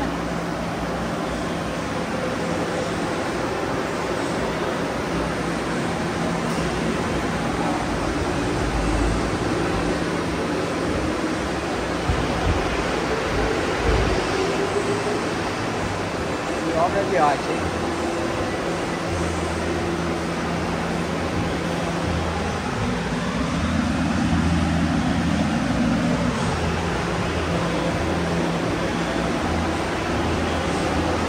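Steady background noise of a busy pit garage: indistinct voices and a constant low hum, with no engine running.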